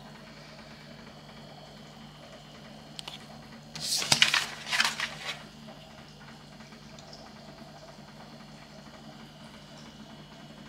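A sheet of paper rustling in two quick bursts, about four and five seconds in, as the printed instruction sheet is handled and turned over. A faint steady low hum lies under it.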